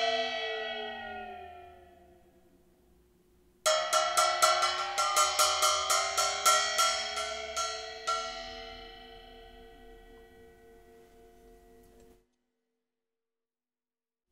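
A gong-like cymbal with a raised centre boss rings from a stick strike while being dipped into a tub of water, its ring sliding down in pitch in a water glissando as it decays. After a short silence it is struck again in a quick roll of about four strokes a second, then rings on and dies away.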